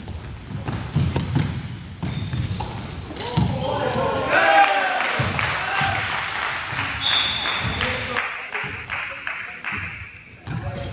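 A basketball bouncing on a hardwood gym floor, with sneaker squeaks, during a game in a large hall. Players' voices shout across the court in the middle of the stretch, from about three and a half to eight seconds in.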